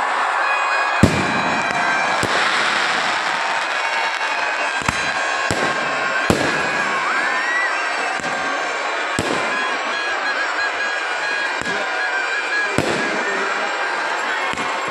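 Fireworks and firecrackers going off: sharp bangs at irregular intervals, roughly one every second or two, over continuous crackling and hiss, with a short rising whistle about seven seconds in.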